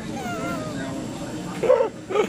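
A high, wavering whine-like vocal sound, meow-like in pitch, in the first second, followed by a short louder voiced sound near the end.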